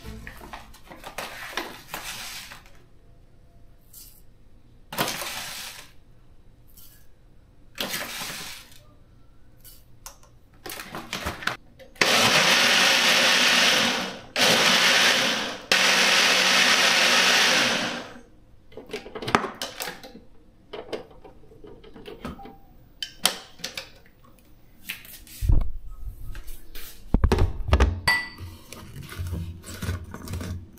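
Single-serve personal blender blending a smoothie in two runs of about two and three seconds around the middle, with a brief stop between them. Before and after come clicks and knocks of the cup and base being handled, and a few low thumps near the end.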